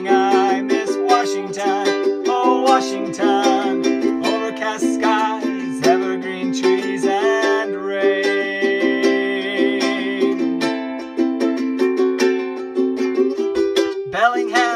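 Ukulele strumming chords in an instrumental break between verses of a song, with a higher melody line of held, wavering notes played over it.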